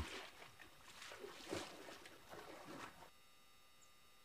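Faint sloshing and squelching of a rhino wading through a shallow muddy pan, irregular and soft, dropping to near silence about three seconds in.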